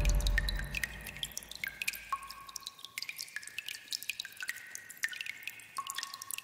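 Water drops falling irregularly, several a second, each a short plink at a different pitch. The low tail of a loud musical hit dies away over the first two seconds.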